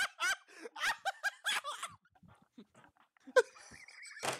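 Laughter in short, broken bursts through the first two seconds, then a pause and another brief burst about three and a half seconds in.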